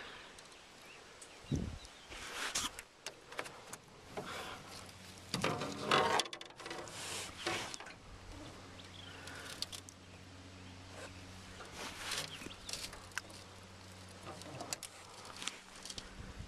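Handling noise as a largemouth bass is held up by the lip: scattered clicks, rustles and light water sounds. A faint steady low hum comes in about six seconds in.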